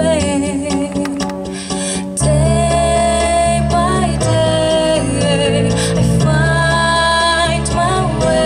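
A young girl's solo singing voice, amplified through a microphone, over a backing track. She holds long notes with vibrato, and the accompaniment's bass comes in fuller about two seconds in.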